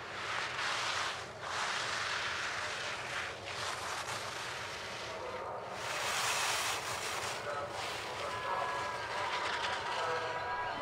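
Giant slalom skis carving turns on the race snow: a run of hissing, scraping swishes, one to each turn. Faint steady tones join in near the end.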